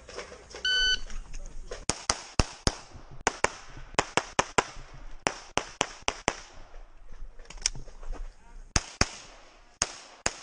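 A shot timer's start beep, one short electronic tone about a second in, then a Glock 34 Gen5 9mm pistol firing fast strings of shots, mostly in quick pairs, with brief pauses between strings.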